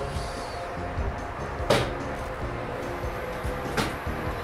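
Braun wheelchair lift unfolding its platform in a van's side doorway: a low mechanical run with two clunks, one about two seconds in and one near the end, over soft background music.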